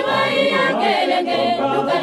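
A mixed choir of men and women singing a religious song in Kikongo, several voices together in harmony.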